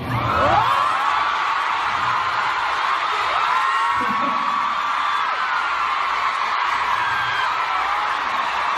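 A large concert crowd screaming and cheering, many high-pitched shrieks and whoops overlapping. It swells up at once as the speaking on stage stops and holds at a steady level.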